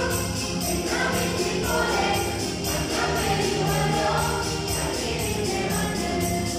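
Mixed choir of women and men singing a Malayalam Christmas carol in unison, over a steady beat.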